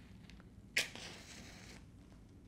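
A wooden match struck on its box: a sharp scrape about three-quarters of a second in, then the hiss of the match head flaring, fading out about a second later.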